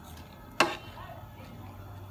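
A metal spoon knocks once against a plate, a single sharp click about half a second in, over a faint low hum.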